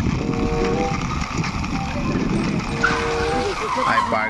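Steady rumbling vehicle noise as a plastic toy fire truck is pushed by hand along a rough concrete wall, with a couple of short steady tones riding on it.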